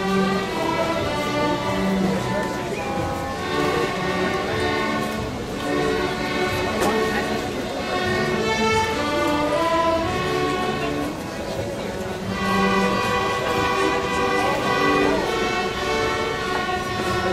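School string orchestra of young students playing a piece together, violins carrying held bowed notes that change about every second.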